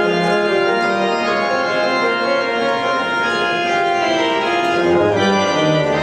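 Organ playing slow, sustained chords as recessional music, with deeper bass notes entering about five seconds in.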